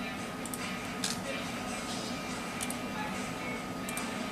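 Faint speech and music in the background, over a steady high-pitched tone, with a few short clicks.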